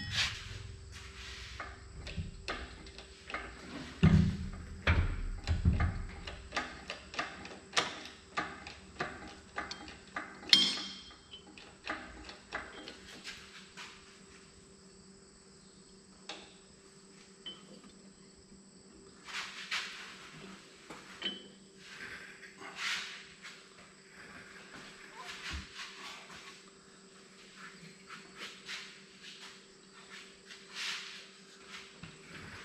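Metal clicks and knocks as an Oliver 1850 tractor's hydraulic unit is worked loose from the transmission housing and lifted on a chain. The clicks come thick and fast for about the first dozen seconds, with louder knocks about four and ten seconds in, then turn sparse and quieter.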